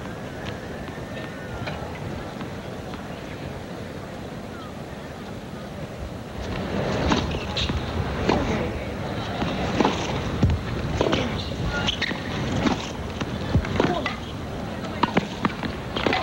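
Tennis rally on a hard court: a serve about six seconds in, then repeated sharp pops of racquets striking the ball, with bounces, roughly every half second to second. Beneath it is the steady murmur of a stadium crowd and breeze.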